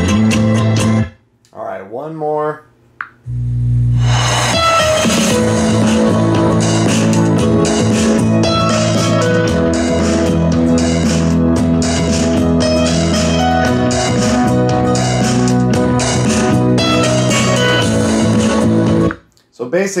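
Bose TV Speaker soundbar playing a royalty-free guitar-and-bass music track over Bluetooth, heard in the room from across it. The music breaks off about a second in, starts again about four seconds in, and stops just before the end.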